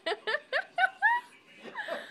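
A woman laughing hard in a quick run of short bursts, easing off after about a second.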